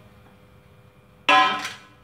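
An empty stainless steel cake pan clangs once, a little over a second in, and rings briefly as it dies away, just after a sponge cake has been turned out of it.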